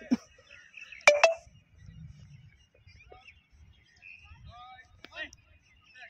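Faint voices calling across an open grass rugby field. Two short, sharp, loud sounds come close together about a second in.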